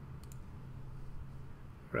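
A single computer mouse click, heard as a quick double tick about a quarter second in, over a faint steady low hum.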